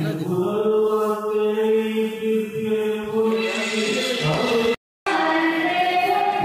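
Devotional chanting in long held notes. About five seconds in the sound cuts out for a moment and resumes at a different pitch.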